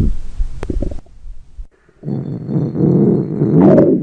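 Stomach growling: a low gurgling rumble that cuts off about a second in, then after a short lull a longer gurgling growl from about halfway that rises sharply in pitch just before the end.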